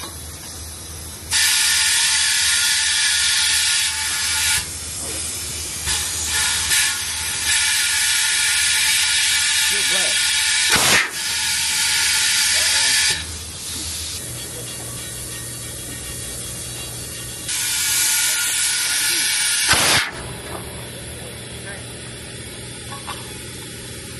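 Compressed air hissing in three long spells as a dump truck tire is aired up on its rim, each spell starting and stopping abruptly. There are two sharp pops, the second just as the hiss cuts off.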